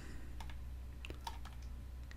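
A few scattered light clicks of computer input, mouse and keyboard, over a low steady hum.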